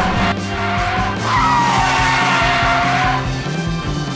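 Tyre-screech sound effect of a skidding car: one screech cuts off a moment in, then a second, longer screech runs from about a second in to three seconds, each sliding slightly down in pitch, over background music.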